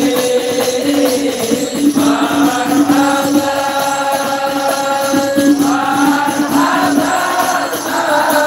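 A group of men chanting a Maulid sholawat together in unison, with frame drums keeping a steady beat; the voices hold long notes through the middle.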